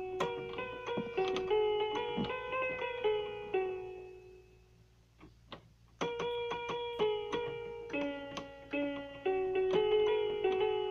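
Electronic keyboard playing a simple melody one note at a time. The notes die away about four seconds in, and playing starts again about two seconds later.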